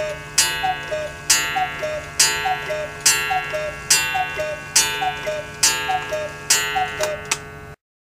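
Hones 8-day Black Forest cuckoo clock calling the hour: the cuckoo's falling two-note bellows whistle repeats about once a second, each call paired with a ringing strike on the clock's gong. The sequence cuts off suddenly near the end.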